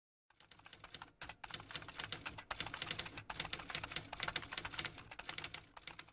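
Rapid typing on a manual typewriter: a fast, uneven run of key clacks with brief pauses about a second in and again about three seconds in.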